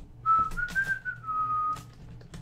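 A person whistling a short phrase of a few notes, rising a little and then settling on a held lower note, with a few light clicks of cards and plastic cases being handled.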